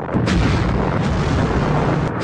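Explosion sound effect: a loud, deep, continuous blast that dips briefly just after it begins.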